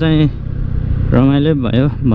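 A man's voice in long, drawn-out syllables that slide in pitch, over the steady low rumble of a moving scooter and wind noise.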